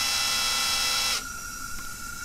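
Cordless drill running steadily as it screws in the plastic spring adjustment button of a gas regulator to raise the outlet pressure, stopping about a second in. A quieter steady hiss of gas flowing through the regulator continues after it.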